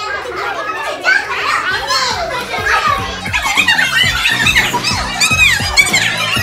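Many children's voices talking over one another as several small groups act out their lines at once. Background music with a steady beat comes in about a second in.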